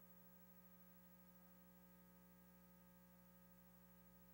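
Near silence with only a faint, steady electrical hum.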